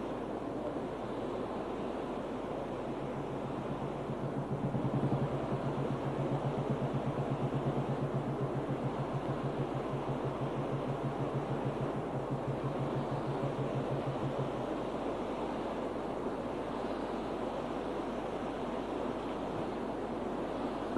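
Steady rushing background noise, with a low hum that comes in about three seconds in and fades out around fifteen seconds.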